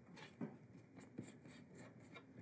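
Faint scraping of a stir stick dabbing two-part epoxy onto a bent wooden guitar side, with a couple of light ticks.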